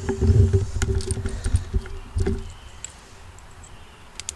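Camera handling noise: a low rumble with a faint steady hum and a few light knocks, dying away about two and a half seconds in.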